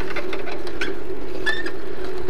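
Steady mechanical whirring and fine rattle of a bicycle being ridden along a street, picked up by a bike-mounted camera, with a short high chirp about one and a half seconds in.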